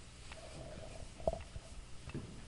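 Faint handling of a chalkboard eraser over quiet room tone, with one soft knock a little over a second in.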